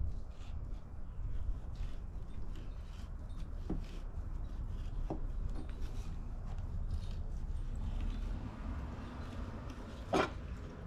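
A fillet knife slicing and scraping along a barracuda fillet on a cutting board, cutting away the rib cage: soft, faint scrapes with a couple of small ticks, over a low steady rumble.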